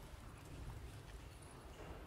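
A quiet pause on a theatre stage: a low, steady room rumble with a few faint, scattered soft knocks.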